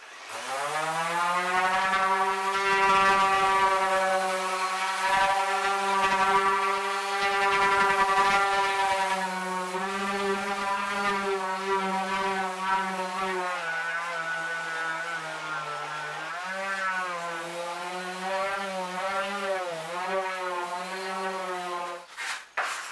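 Electric random orbital sander running against a plywood boat hull: it spins up to speed in the first second, then holds a steady motor whine that dips and wavers in pitch in the second half before cutting off at the end.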